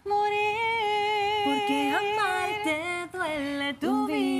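A woman singing a Spanish ballad, holding long notes that slide up and down between pitches, with a short break for breath about three seconds in.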